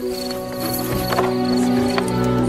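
Background music with long held tones, with a few knocks or clatter in the middle.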